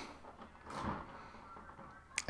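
Faint, muffled clatter of a child's marble run on the floor above: marbles rolling and knocking, with a brief louder rattle a little under a second in.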